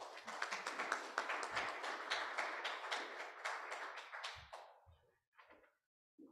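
Audience applauding, dying away about five seconds in, with a couple of low thumps near the end.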